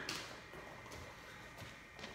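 A few soft footsteps on a wrestling mat, faint over quiet room tone.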